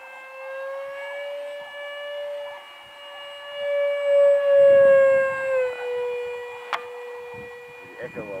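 Electric model aircraft's motor whining steadily overhead, growing louder as the plane flies past and dropping slightly in pitch as it passes. Low wind rumble sits under the loudest part, and a single sharp click comes near the end.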